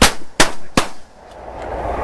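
Three shotgun blasts in quick succession, about 0.4 s apart, from several duck hunters firing at once. A steady rushing noise then builds up.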